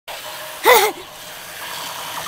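A young child's short, high-pitched vocal exclamation whose pitch rises and falls, about two-thirds of a second in, over a steady background hiss.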